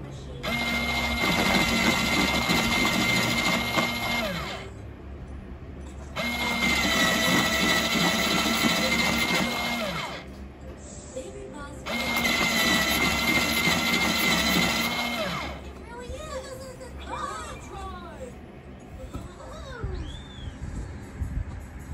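A Bostitch Personal electric pencil sharpener sharpens a wooden pencil in three runs of about three to four seconds each. Its small motor whines steadily under the grinding of the blades, and each run starts abruptly and winds down in pitch as it stops.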